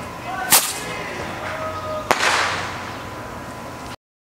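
Two firecracker bangs about a second and a half apart, the second followed by a fading hiss; the sound cuts off just before the end.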